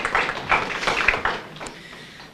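A small audience clapping, the applause thinning and dying away about one and a half seconds in.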